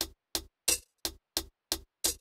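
The added layer from the Devious Machines Texture plugin, played on its own: a hi-hat sample triggered by the clap's gate. It gives short, dry, bright percussive hits, about three a second, six in all, with silence between.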